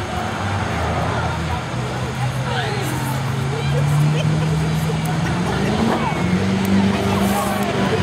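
Crowd voices and scattered shouts from spectators at a wrestling match, over a steady low droning hum that rises in pitch about halfway through.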